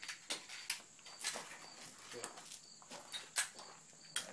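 A jammed semi-automatic pistol being handled to clear it: a few separate sharp clicks and knocks as the slide is pulled back.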